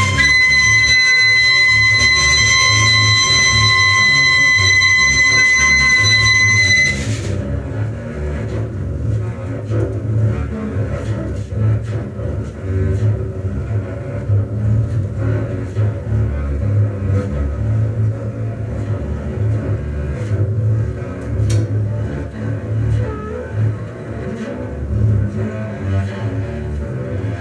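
Live small-group experimental jazz: clarinet and saxophone hold a long high note over double bass, cutting off about seven seconds in. The double bass then plays low, busy lines on its own, with a few faint clicks from the drum kit.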